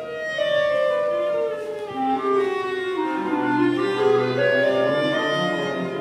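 Chamber ensemble of violin, cello and clarinet playing contemporary classical music in long held, overlapping notes, with a low cello note entering about halfway through.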